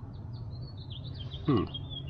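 A bird chirping: a quick string of short, high chirps, with a steady low hum underneath.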